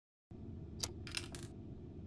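Three short, sharp mechanical clicks over a faint low hum: a single click about a second in, then a quick pair.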